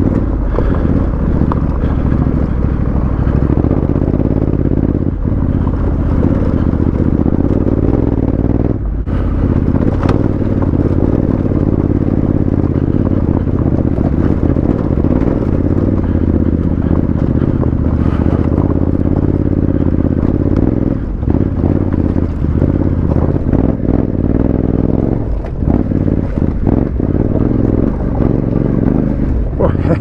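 Honda CRF1100L Africa Twin's parallel-twin engine running steadily at low speed as the bike climbs a loose, rocky gravel track. Stones knock and rattle under the tyres now and then, and the engine note dips briefly a few times.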